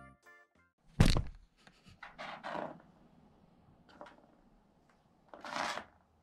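One loud thump about a second in, then short scraping rustles of cardboard being pushed and slid about by a cat pawing at loose cardboard pieces.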